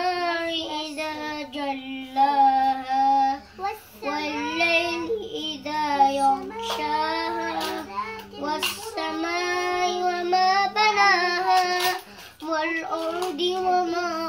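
A young boy singing a melody unaccompanied, in phrases with long held notes and short breaks.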